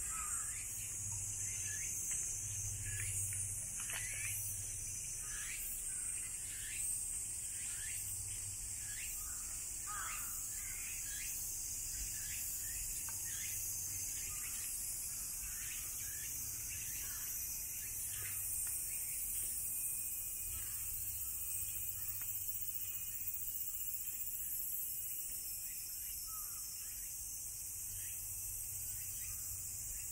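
A steady, high-pitched drone of a summer cicada chorus in the trees, with short falling bird calls again and again, thinning out in the last third.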